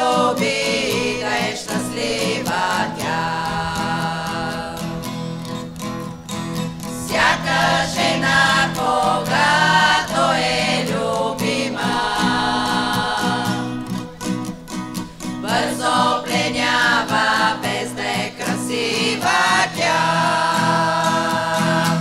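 A women's vocal group singing a song in harmony, accompanied by a strummed acoustic guitar.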